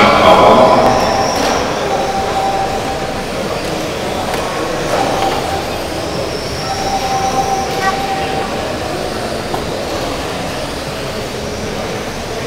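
1/12-scale GT12 electric RC cars racing, their motors whining in high tones that swell and fade as the cars pass. The whine is loudest in the first second.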